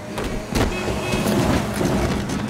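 A bus rushing past at speed. Its engine and passing rush swell sharply about half a second in and stay loud.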